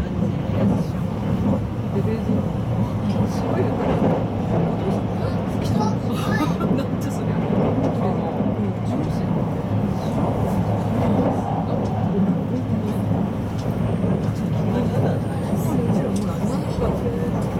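JR West 681 series electric train running at speed, heard inside a passenger car: a steady rumble of wheels on rail, with passengers chattering throughout.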